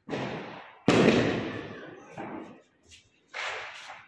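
Firecrackers going off, about four bangs with the loudest about a second in, each echoing and trailing off over a second or so.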